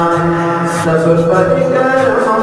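Islamic devotional vocal chanting used as background music: a voice holding long notes that slowly bend from one pitch to the next.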